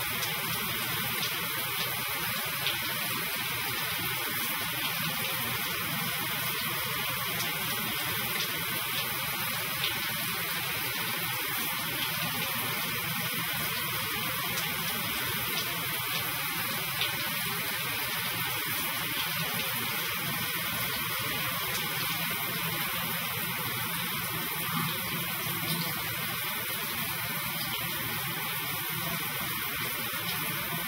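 Water running steadily from a low-flow Roadrunner shower head into a shower stall, an even hiss that does not change.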